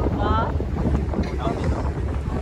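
Wind buffeting the microphone aboard a moving catamaran: a steady low rumble throughout, with a brief high voice about a quarter second in.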